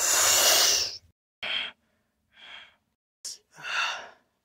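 A loud hissing whoosh, like a jet taking off, as the Iron Man figure flies away; it stops about a second in. Four short, breathy puffs follow, with silence between them.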